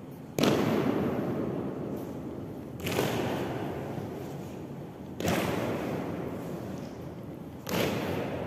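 Ceremonial guard's boots stamping on a stone floor in a slow drill march: four loud stamps about two and a half seconds apart, each echoing long through the stone hall.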